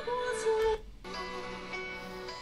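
Male singer holding a sung note over sustained accompaniment, from a played-back live concert recording. The voice stops just under a second in, and the steady accompaniment chords carry on.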